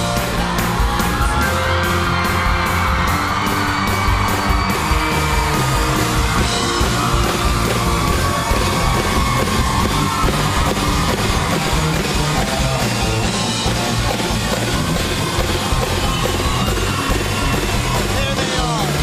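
A band playing rock music loudly over a crowd that cheers and yells, with evenly spaced hits in the first few seconds.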